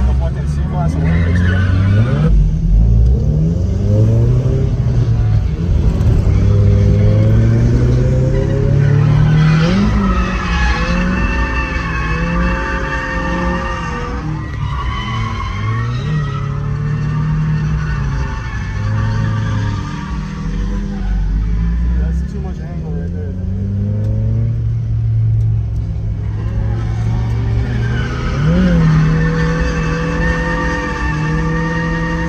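Car engine revved hard and repeatedly, its pitch rising and falling, with tyres squealing in long stretches as the car drifts, heard from inside the cabin.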